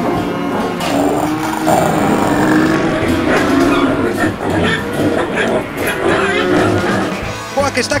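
Music with held notes and voices in it.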